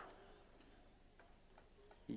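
Near silence in a pause in a man's speech, with a few very faint ticks.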